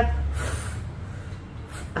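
A woman blowing out a breath through pursed lips, showing how to blow on a hot infusion to cool it before sipping. A second, shorter breath follows near the end.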